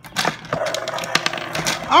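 Hard plastic toy parts clicking and rattling in quick irregular knocks as a toy raptor figure digs plastic eggs out of the Dino Meal game's nest.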